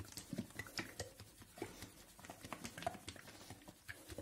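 Plastic shampoo bottle being shaken by hand: faint, irregular taps and rubbing of the hand on the plastic and the shampoo shifting inside.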